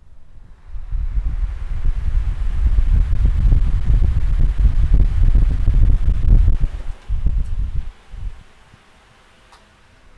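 Wind from two electric fans on high buffeting a clip-on lavalier microphone: a loud, gusty low rumble of wind noise on the mic. It builds about a second in, holds for some six seconds, dips, gusts once more and dies away about eight seconds in.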